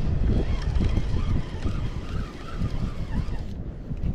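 Wind buffeting the microphone as a loud, gusty low rumble that eases somewhat in the second half.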